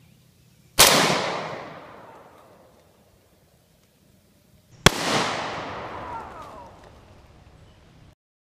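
Two shots from a Colt HBAR AR-15 rifle, about four seconds apart, each a sharp crack followed by a long rolling echo that dies away over a second or two.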